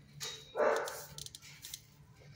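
A dog barks once, a single short bark about half a second in, followed by a few light clicks.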